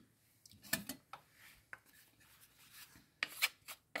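A spoon stirring and scraping through grated cheese, cream and chopped vegetables in a ceramic baking dish: a few faint, short scrapes about a second in and again near the end.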